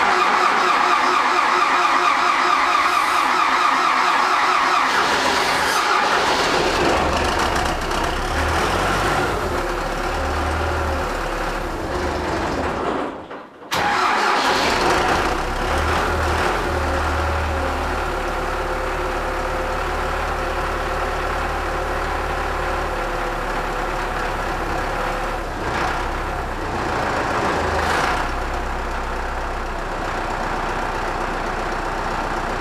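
MTZ-82.1 tractor's four-cylinder diesel being cranked by its electric starter for a few seconds, then catching and running. The sound breaks off briefly about halfway through and comes back with the engine running steadily.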